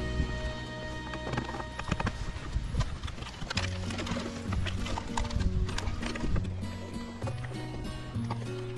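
Background music with a bass line that steps from note to note, and scattered sharp clicks.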